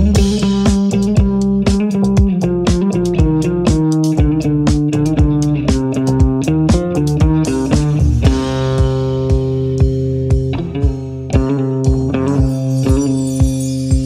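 Electric guitar playing a single-note riff with hammer-ons over drums and bass at a steady beat; about eight seconds in, the low notes change to long held ones.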